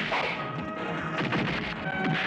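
Film fight sound effects: a hard hit right at the start and a quick run of blows about a second later, over a background score with held tones.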